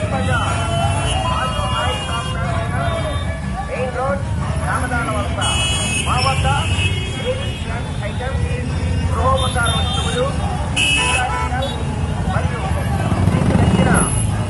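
Many motorcycle engines running in a slow procession, with a crowd of overlapping voices shouting over them and horns tooting briefly twice.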